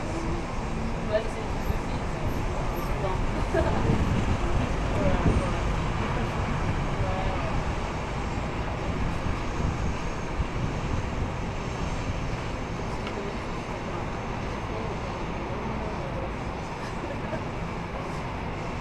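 Steady outdoor street traffic noise, swelling as a vehicle passes about four to six seconds in, with faint voices in the background.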